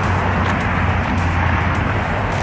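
Steady road traffic noise, a continuous low rumble from passing cars.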